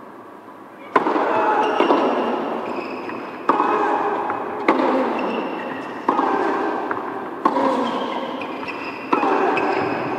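Tennis ball bounced on an indoor hard court about six times, each bounce a sharp knock that rings on in a large, echoing arena, the routine of a player readying to serve.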